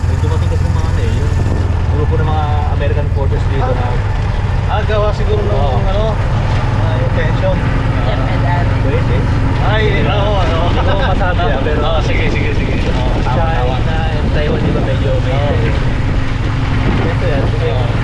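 Motorcycle engine of a sidecar tricycle running steadily while the vehicle is under way, a continuous low hum, with people talking over it.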